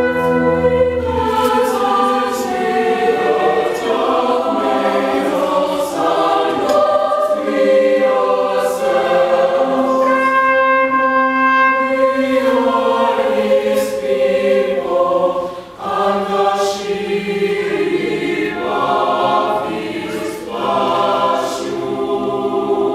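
A mixed choir sings with a brass and percussion ensemble. A held brass chord with low bass notes stops about a second and a half in, and the choir carries on with sustained sung chords that shift in pitch. There is a brief dip in loudness a little after the middle.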